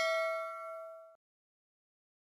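Notification-bell chime sound effect ringing on from its strike with several clear tones, fading and then cutting off suddenly about a second in.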